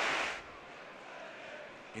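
Football stadium crowd noise: a loud crowd reaction that cuts off suddenly about half a second in, leaving a faint, steady crowd murmur.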